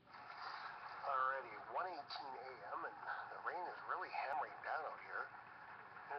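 A man's voice played back through a phone's small speaker, thin and narrow-sounding, over a steady hiss. It starts suddenly.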